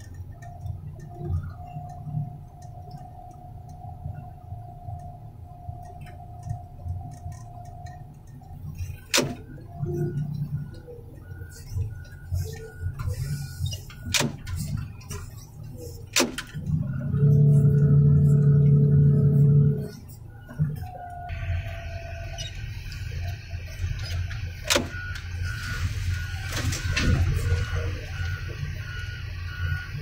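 A heavy machine's engine running steadily, with a few sharp clicks. Past midway a horn sounds one steady blast of about two and a half seconds, and after it the engine runs louder and fuller.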